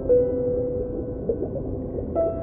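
Soft, slow relaxation piano music: a single note struck just after the start and left ringing, over a sustained background.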